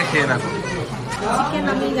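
People talking, with chatter in the background.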